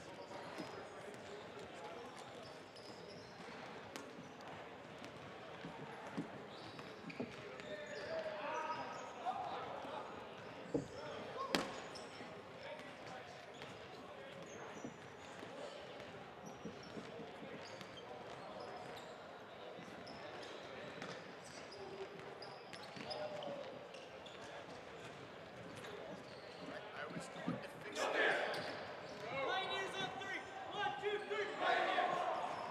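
Echoing gymnasium ambience: distant chatter of players carrying around the hall, with a few sharp thuds of dodgeballs bouncing on the hardwood floor, the loudest about eleven seconds in. A nearer voice comes up near the end.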